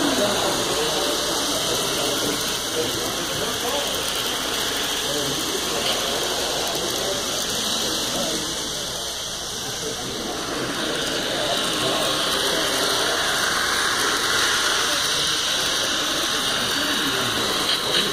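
Model trains running on a layout, a steady mechanical rattle of small wheels and geared motors, over a background of crowd chatter.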